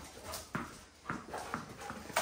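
Dogs' claws tapping and scuffing on a concrete floor as two dogs play with a ball, with a few sharp taps about half a second and a second in.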